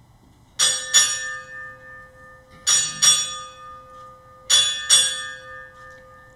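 Ship's bell struck in three pairs, two quick strikes each time, ringing on between the pairs: the Navy's side honours rung in pairs for a departing officer just before he is announced.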